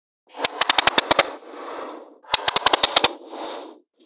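Small neodymium magnetic balls snapping together in two quick runs of about eight sharp clicks each, each run followed by a softer rattle of balls rolling and shifting against one another.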